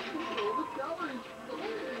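Voices of people in the room talking quietly, with a single steady tone held for under a second near the start.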